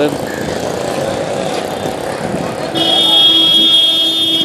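Busy street traffic noise, then a vehicle horn sounding one long steady honk starting nearly three seconds in.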